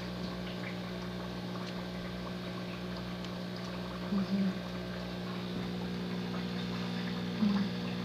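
Submersible sponge filter running in a turtle tank: a steady electric hum under water bubbling and churning at the surface. Two short low tones break in, about four seconds in and near the end.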